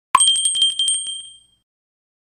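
A bell sound effect marking the end of an on-screen countdown: one sharp strike, then a rapid ringing trill with two high ringing tones that fades out after about a second and a half.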